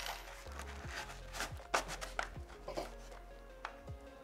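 Background music, over a handful of short scrapes and clicks as a pistol magazine is pushed into a fabric bungee-retention magazine pouch and the bungee cord is slid over it.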